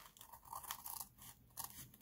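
Scissors cutting through a flap of brown kraft paper bag: a few short, faint snips.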